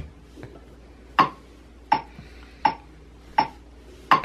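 Metronome-style count-in clicks played from a computer lesson track: four sharp, evenly spaced ticks about three quarters of a second apart, counting in a ukulele play-along.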